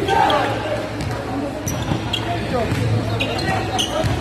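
Basketballs bouncing on an indoor court, with scattered voices and a few short high squeaks over a steady low hum in a large gym.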